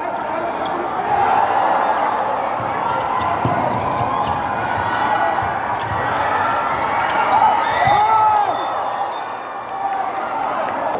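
Basketball game in a large gym: a steady din of crowd voices and shouts, with the ball bouncing on the hardwood court now and then.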